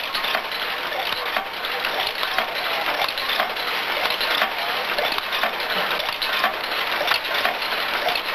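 Bottle-filling machinery running: a steady, dense clatter of rapid clicks and rattles.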